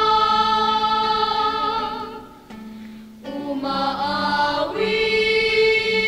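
A choir singing a slow hymn in long held notes, breaking off for about a second midway and then going on.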